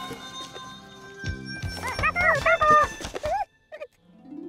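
Light background music, then from about two seconds in a high, squeaky cartoon voice babbling in short rising and falling calls, cut off by a brief silence near the end.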